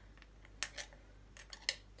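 A small metal spoon clinking against a glass spice jar while scooping curry powder: four light clinks in two pairs.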